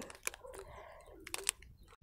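Faint crinkling of a clear plastic bag and scattered light clicks as a bagged silicone pop-it fidget toy is handled, with two sharper clicks about a second and a half in.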